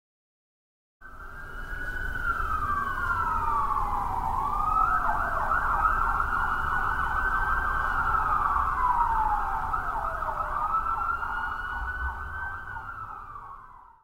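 A siren wailing about a second in. It holds a high pitch, then sweeps down and back up every few seconds, and fades out near the end.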